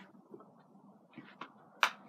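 Faint handling noise: a few soft taps and clicks, with one sharper click near the end.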